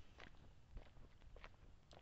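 Near silence: faint background with a few soft, scattered clicks.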